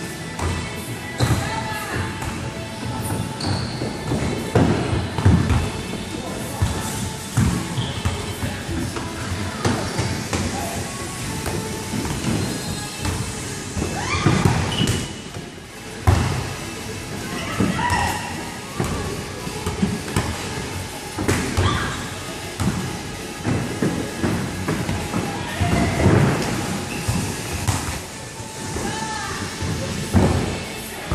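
Irregular dull thumps of inflatable bubble-soccer suits bumping into each other and a ball being kicked on a wooden court in a large indoor sports hall, with voices calling out now and then.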